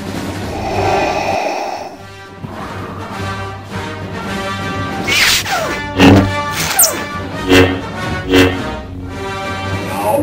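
Orchestral film score playing, with falling sweeping sounds about halfway through, followed by several loud crashing hits over the next few seconds.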